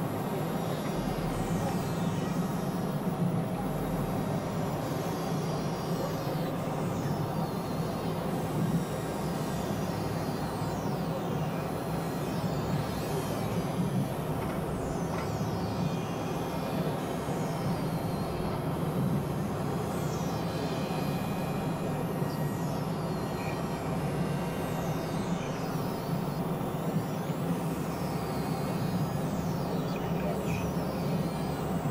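Experimental electronic drone music: a dense, steady synthesizer drone centred low, under a noisy wash, with thin high-pitched falling sweeps repeating every few seconds.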